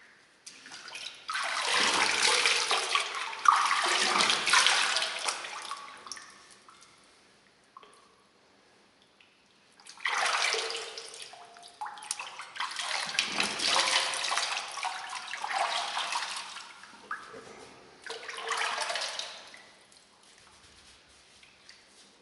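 Hands scooping and splashing cold spring water from a shallow pool, in four splashy bursts of a few seconds each with short pauses between.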